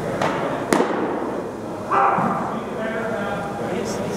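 A single sharp smack about three-quarters of a second in, over a murmur of voices in a large echoing hall.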